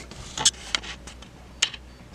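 Three light clicks of small plastic figures being handled and set down on a tabletop, with a brief laugh at the start.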